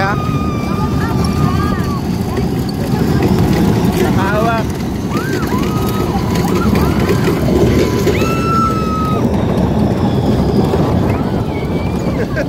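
Wind rushing over a phone microphone on a moving amusement ride, with riders screaming and shouting over it in several long, wavering cries.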